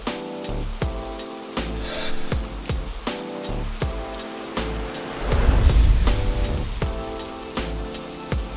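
A rain sound effect, with drops pattering on water, over background music of sustained chords. About five seconds in, a louder low rumble with a hiss swells for a second or so, then fades.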